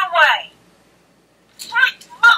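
Disney Store Toy Story 4 talking Jessie doll playing its recorded voice phrases through its built-in speaker: one phrase ends about half a second in, and after a short pause another begins near the end.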